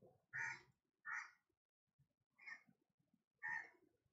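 Faint bird calls in the background: four short calls about a second apart.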